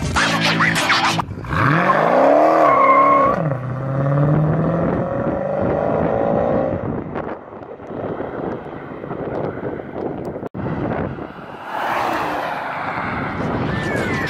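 Dodge Challenger Scat Pack's 6.4-litre HEMI V8 revving hard as the car accelerates, its pitch climbing and then falling back within about two seconds. It is followed by a quieter stretch of engine and road noise, with another loud surge near the end. Background music plays briefly at the very start.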